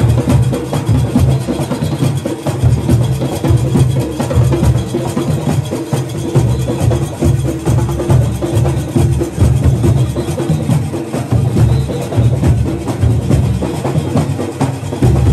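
Junkanoo goatskin barrel drums beaten by hand in a steady, driving rhythm by a whole drum section, deep booming hits layered densely over one another.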